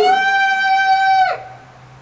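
A loud, high-pitched scream from a person, held on one pitch for just over a second and then breaking off with a sharp downward drop.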